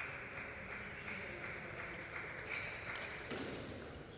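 Table tennis ball being hit in a rally: a few faint, sharp clicks of the ball on rackets and table over a steady background hiss.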